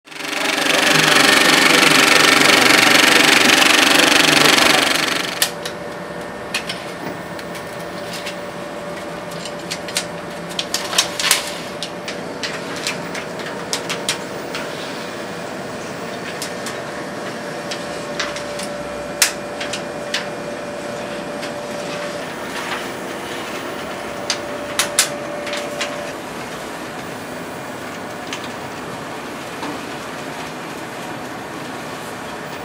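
A loud chord of several held tones for about the first five seconds gives way to the steady mechanical running of 70mm film-platter and projection-booth machinery, with a faint steady whine that stops near the end. Scattered sharp clicks and taps come from the film and reel being handled on the platter.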